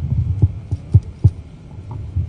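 Low hum and thumping picked up by a handheld microphone held close to the mouth between phrases, with three sharper knocks within the first second and a half.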